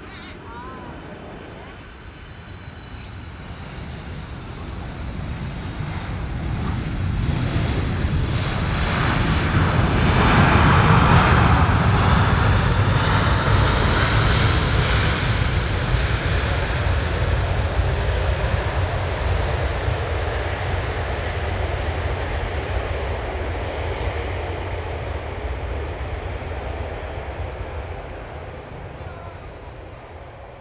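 Boeing 747-400F freighter's four jet engines as it lands and rolls out, with a faint high whine at first. The engine noise builds to its loudest about ten seconds in, then fades slowly as the aircraft moves away down the runway.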